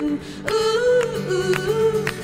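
Women's voices singing a wordless harmony line in time with handclaps, with an acoustic guitar coming in underneath.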